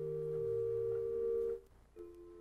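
Organ holding a soft, pure-toned chord while the bass note changes underneath. It cuts off about one and a half seconds in, and a new, quieter chord begins right at the end.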